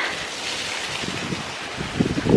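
Water rushing down an open water slide as a rider pushes off, a steady hiss that starts suddenly, with wind buffeting the microphone underneath.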